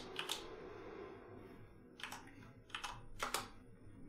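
A few scattered computer keyboard keystrokes, faint and spaced apart, over quiet room tone.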